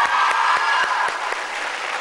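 Studio audience of young women screaming and cheering over clapping. The massed high-pitched shouting eases slightly toward the end.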